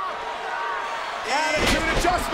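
A wrestler's body slammed down onto the ring canvas: one loud thud about one and a half seconds in, with a shouting voice around it.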